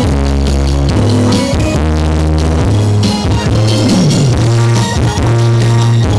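Live pop music amplified through stage loudspeakers: a saxophone duo playing over a backing track with a heavy, steady bass line and drums.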